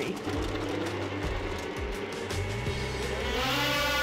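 A broadcast music bed with deep, held bass notes over two-stroke snocross race sleds waiting at the start line. Near the end a wide rush of engine noise builds as the field launches off the line.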